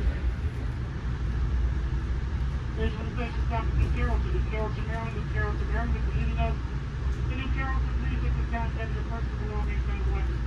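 Steady low rumble of an Amtrak Amfleet I coach rolling along the track, heard from inside the car. Indistinct voices come in about three seconds in.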